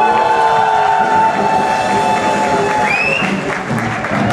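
Audience applauding and cheering as a live praise band's song ends on a long held note, which stops about three seconds in.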